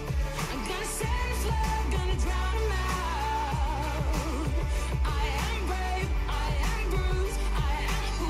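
Upbeat pop song with a sung vocal over a steady beat and heavy bass.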